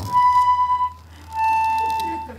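Red toy accordion sounding two held single notes, the second slightly lower than the first, with a short pause between them.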